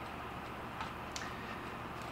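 Two faint, light clicks about a second in, over low steady room noise, as a katana is picked up and handled.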